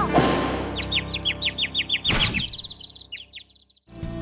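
Music dying away, then a bird's rapid trill of quick falling chirps, about seven a second, that move higher and stop shortly before the end. A brief rushing sound cuts across the trill about two seconds in.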